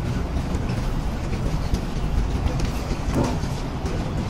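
Steady low rumbling noise, with faint light ticks now and then and a brief swell about three seconds in.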